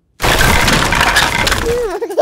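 A tall tower of plastic toy bricks toppling and clattering down in a cartoon sound effect: a loud, dense rattling crash of many small impacts that starts abruptly just after a moment of silence and lasts over a second. Near the end a baby's voice starts.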